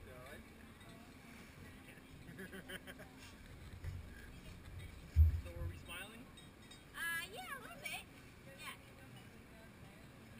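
Faint, distant voices of people talking, with a single low thump about five seconds in.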